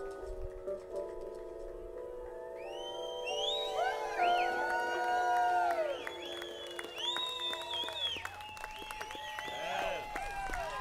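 A live band's last chord held and ringing out, while from about three seconds in the audience cheers and whistles, with many piercing whistles gliding up and down over it.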